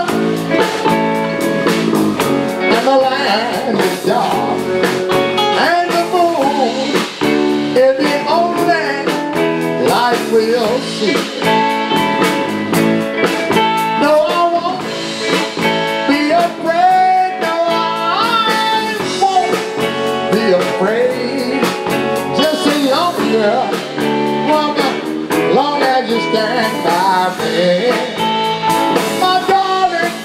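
Live electric blues band playing: electric guitars with bent notes over bass guitar and a drum kit, keeping a continuous groove.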